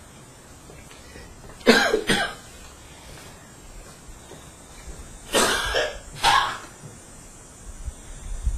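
A person coughing: two quick coughs about two seconds in, then two more a few seconds later.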